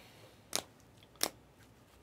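Two sharp plastic clicks about two-thirds of a second apart: trading cards in hard plastic holders knocking together as they are shuffled by hand.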